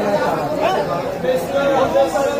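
Overlapping chatter of several voices talking.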